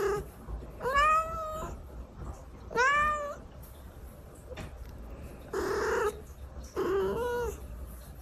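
Domestic cat giving a run of drawn-out meows, five calls each under a second long. Some rise and fall in pitch, others are rougher and lower.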